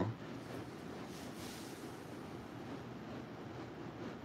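Faint rustling of a stack of paper one-dollar bills being handled, over a steady low hiss of room noise.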